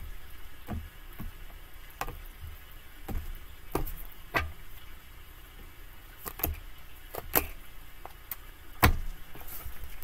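Tarot cards being shuffled and handled by hand, with irregular sharp clicks and taps of the cards against each other and the table, the loudest near the end.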